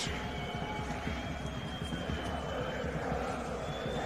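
Steady stadium crowd noise from football spectators, with a few faint high whistles.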